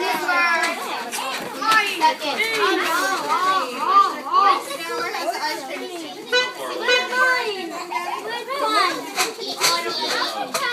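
A crowd of young children talking and calling out over one another.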